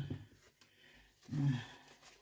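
A woman's voice: a spoken phrase ends at the start, and after a quiet pause there is one short, low vocal sound a little past halfway.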